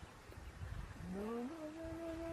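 Young elephant bellowing under attack by lionesses. About a second in, the call rises in pitch, then holds one steady tone.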